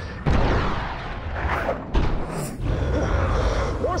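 F/A-18 Super Hornet fighter jets roaring as they pass low and fast, with a sudden loud surge about a quarter second in and another sharp swell near two seconds.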